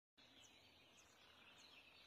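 Faint outdoor ambience with small birds chirping: three short, very high chirps about half a second apart over a steady faint high hiss.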